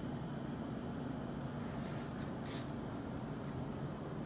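Steady background room noise with a faint low hum, and a few faint light ticks about halfway through.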